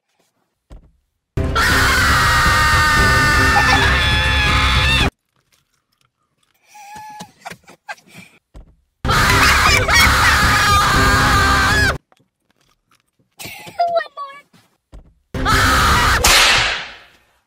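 Loud screaming in three abrupt bursts: one of about four seconds, then one of about three seconds, then a third starting just before the end. Each burst cuts off suddenly, with quieter gasps and groans between them.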